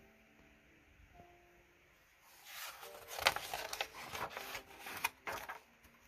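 Pages of a picture book being turned and handled: about two seconds in, a run of paper rustling and scraping with sharp crackles lasts about three seconds. Faint background music with held notes sits underneath.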